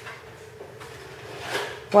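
Quiet room tone with a faint, brief rustle about one and a half seconds in. A voice starts right at the end.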